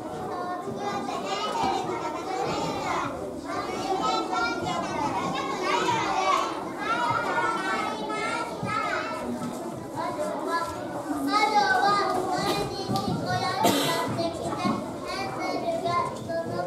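Many young children's voices talking and calling out over one another, with one short sharp noise near the end.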